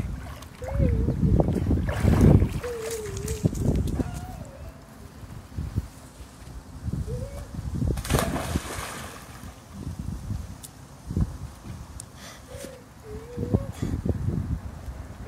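Pool water splashing and sloshing, with one big splash about eight seconds in as a swimmer falls backwards into the water.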